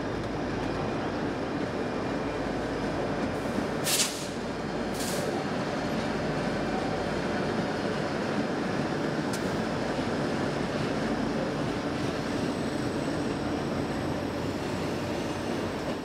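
Diesel passenger train passing over a steel trestle bridge: the EMD F40PH-2 locomotives and coaches make a steady rolling rumble with a faint low engine hum. Two brief sharp noises come about four and five seconds in.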